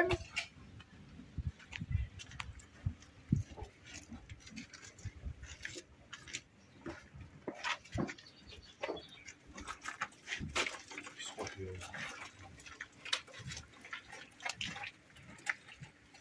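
Faint, irregular knocks and rustles of horses shifting about in their stalls.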